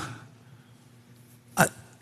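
A pause with faint room tone, broken about a second and a half in by one short, sharp vocal sound from a man at a microphone, a brief catch of breath in the throat.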